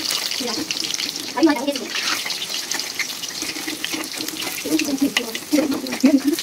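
Battered chops shallow-frying in hot oil in a wok, a steady sizzle thick with fine crackles.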